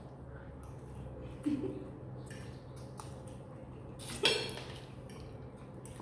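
Metal forks clinking and scraping on ceramic plates as instant noodles are twirled and eaten, with short noodle slurps in between; the loudest is a brief burst a little past four seconds in.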